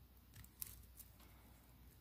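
A few faint, small metallic clicks of jewellery pliers handling a jump ring and fine metal chain, the sharpest a little over half a second in, over near silence.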